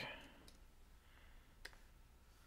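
Near silence with two faint computer mouse clicks, one about half a second in and a sharper one near the end.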